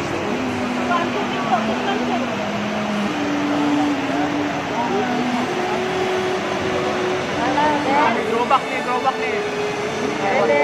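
Flash-flood water rushing in a steady roar, with people's voices calling out over it and sharper shouts about eight seconds in.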